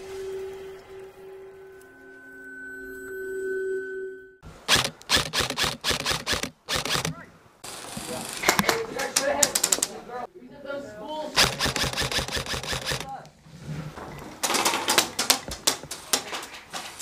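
Two steady droning tones from the intro, then repeated bursts of rapid clicking shots, typical of airsoft guns firing in quick succession. Indistinct voices come between the bursts.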